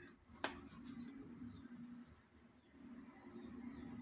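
Near silence: faint room tone with a steady low hum and a single soft click about half a second in.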